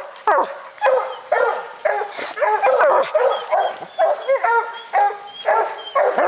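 Bear hounds baying at a black bear treed above them: loud, repeated short bays about two a second, overlapping and often dropping in pitch.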